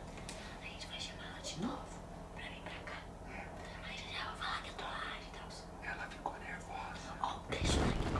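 Whispered conversation between two people, soft and hissy, with a louder spoken word near the end.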